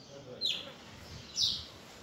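A bird calling: two short, high, downward-sliding chirps about a second apart.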